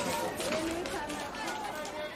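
Crowd murmur from a busy marketplace: many overlapping indistinct voices chattering in the background, slowly fading out.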